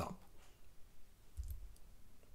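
Faint clicks and a soft low thump about one and a half seconds in, over quiet room tone.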